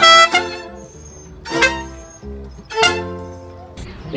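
Mariachi ensemble of violins, guitarrón and vihuela playing the closing chords of a song: a loud chord that rings and fades, then two more chords a little over a second apart, each left to ring out.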